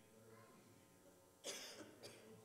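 A single short cough about one and a half seconds in, over faint room tone with a low hum.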